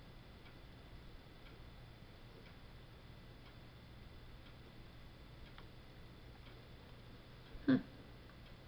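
Quiet room with a low hum and faint, even ticks about once a second.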